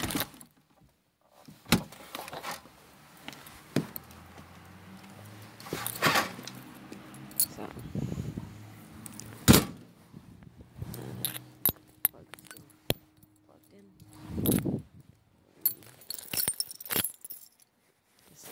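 A bunch of keys jangling and clicking, with repeated knocks and handling thumps and one louder knock about halfway through. A low steady hum sounds under the middle part.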